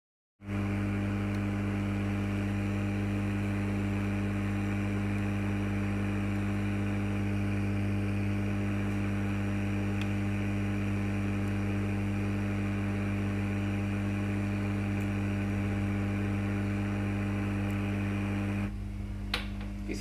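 Hot air rework gun blowing steadily onto an ECM circuit board, its blower giving a constant hum with a hiss of air, while a replacement MOSFET is soldered into place. It starts abruptly about half a second in, and a few light clicks come near the end.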